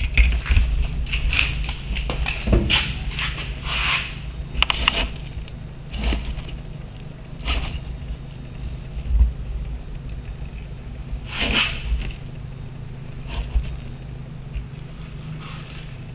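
Handling noise: scattered light knocks and clicks, most of them in the first five seconds and a stronger one near the end, over a steady low hum.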